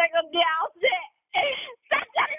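Telephone-call speech: a high-pitched voice talking over a phone line, thin-sounding, with a short pause about a second in.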